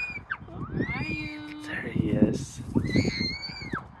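Young children's high-pitched voices calling out and squealing in play, several short rising-and-falling calls one after another.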